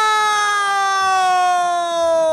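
A man's long drawn-out shout on one held vowel, loud and close to the microphone, its pitch sliding slowly down throughout: a football commentator's exclamation as a cross into the box comes to nothing.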